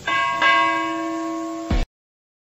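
A bell-like chime struck twice in quick succession, ringing on with several steady tones as it slowly fades. A low thump comes near the end, then the sound cuts off suddenly.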